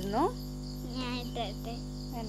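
Crickets chirping in a steady, evenly pulsing high trill.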